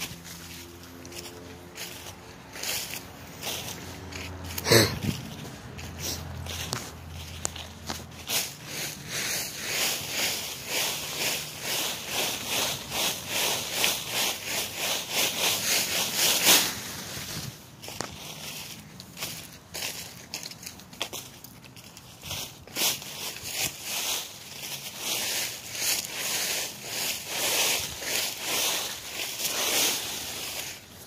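Dry fallen leaves rustling and crunching in a long run of repeated strokes, busiest from about eight seconds in. A low hum sounds under them for the first several seconds, and there is one sharp knock about five seconds in.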